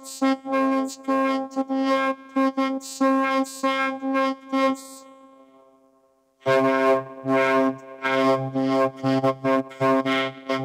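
Robotic vocoded speech from a DIY 10-band analog vocoder, with a sawtooth VCO as the carrier, so the talking comes out as a buzzy monotone at one fixed pitch. It fades out about five seconds in. About a second later it resumes with a deeper tone added, from a second sawtooth VCO carrier.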